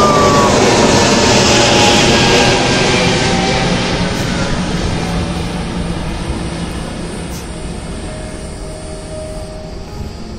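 Twin-engine jet airliner passing overhead: loud jet engine noise with a whine falling in pitch at the start, loudest in the first few seconds and then fading steadily as it flies away.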